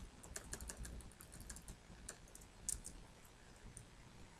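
Faint, quick keystrokes on a computer keyboard: a run of light key clicks, with one sharper keystroke a little before the third second.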